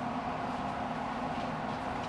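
A child's bicycle with training wheels rolling steadily along a hardwood floor.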